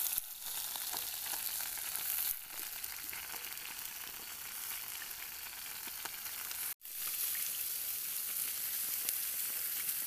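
Sliced mushrooms, onion and bell peppers sizzling on a hot ribbed grill pan: a steady hiss with small crackles. It breaks off for an instant about two-thirds of the way through.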